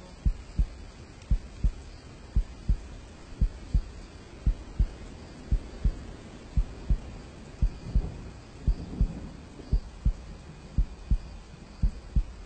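Heartbeat sound effect: slow, steady double thumps, one pair about every second, as a man holds his prostration in prayer and dies in it.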